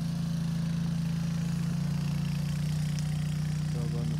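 An engine running at a steady speed, giving a low, even hum that does not rise or fall.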